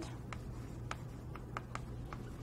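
Writing: about five short ticks and scratches of a writing tool on a writing surface, over a low steady room hum.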